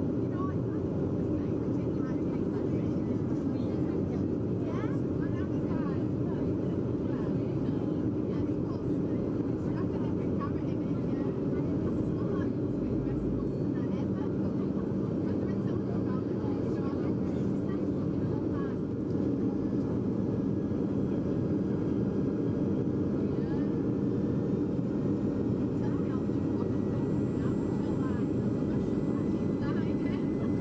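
Steady cabin noise inside a jet airliner descending on approach: a continuous low drone of engines and rushing air. A low steady hum joins it about halfway through.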